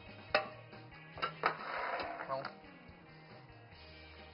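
Soft background music, with a few sharp clicks and about a second of scraping as a spatula works thick cake batter out of a glass mixing bowl into a metal baking pan.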